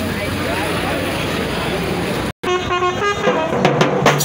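A loud, dense din from a street crowd and drum band. It breaks off suddenly, and after the break car horns honk in short toots over crowd voices.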